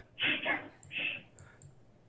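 A man's soft, breathy laughter trailing off in two short puffs and a fainter third, with a couple of faint clicks.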